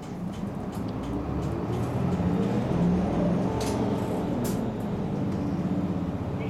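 City bus diesel engine, heard inside the cabin, pulling away and accelerating. Its drone grows louder about a second in and then holds steady, with a few light clicks or rattles near the middle.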